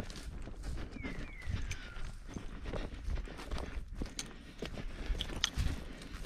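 Footsteps crunching over dry pine needles and twigs on a forest floor, with sharp crackles of twigs snapping underfoot. A falling, whistle-like call sounds twice in quick succession during the first two seconds.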